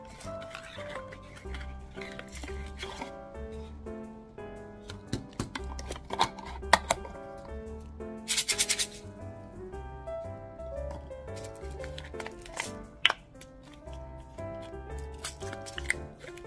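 Background music with a steady low beat throughout, over scattered clicks and rustles of a paperboard box being opened and handled. About eight seconds in comes a short, quick rattle of small herbal pellets shaken inside a plastic supplement bottle.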